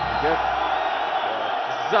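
Large arena crowd keeping up a steady din, with a brief bit of a man's commentary early on.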